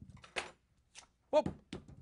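Two short, sharp clicks about half a second apart as scissors snip through nylon pantyhose to cut an onion free.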